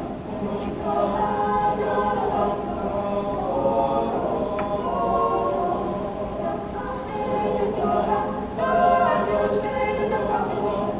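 Mixed high-school choir of male and female voices singing in held, sustained harmony.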